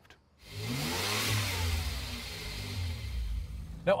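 BMW 435i coupe's turbocharged inline-six accelerating past: the engine note rises to a peak about a second in and then falls away, under a rush of tyre and wind noise.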